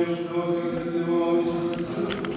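Orthodox liturgical chanting from the wedding crowning service, with voices holding long, steady notes.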